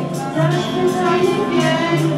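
A choir singing a slow melody in held notes, with one singer's voice picked up by a hand-held microphone.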